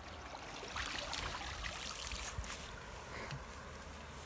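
Shallow muddy water splashing and trickling as hands work in it beside a net fish trap, with a few sharper splashes between about one and two and a half seconds in.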